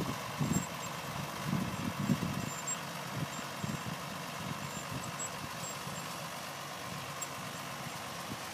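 Diesel farm tractor engine running steadily at low speed as it slowly pulls a mechanical transplanter, with a few low thumps in the first two seconds.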